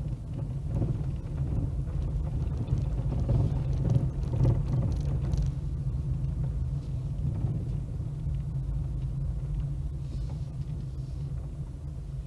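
Low, steady rumble of a car's engine and tyres heard from inside the cabin while driving slowly down a street, swelling a little about three to five seconds in.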